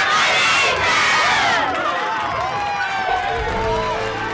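A group of children cheering and shouting together, loudest in the first couple of seconds and then thinning out to a few separate voices. Music comes in near the end.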